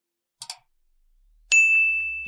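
Subscribe-button animation sound effect: a quick double mouse click about half a second in, then a bright bell ding about a second and a half in that keeps ringing.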